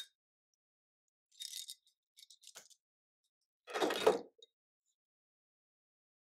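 Metal parts of a Herzberg double-barrel bassoon reed profiler being handled: a brief scrape, a few light clicks, then a louder metallic clatter about four seconds in.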